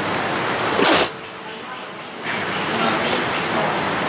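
Loud breathy hissing close to the microphone, with a short sharp burst of breath about a second in, then more breathy, half-voiced sounds.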